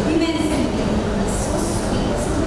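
A woman talking over a loud, steady low rumble of background noise.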